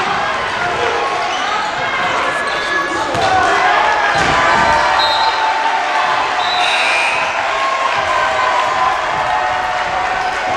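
A basketball dribbled on a hardwood gym floor during live play, among the many overlapping voices of spectators and players.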